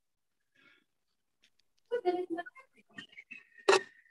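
Video-call audio: near silence for about two seconds, then brief indistinct speech with a few small clicks. One sharp click about three-quarters of the way in is the loudest sound.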